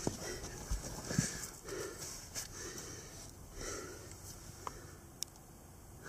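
A person breathing hard and scuffing against rock and soil while crawling through a tight cave passage, with a few small knocks of stone.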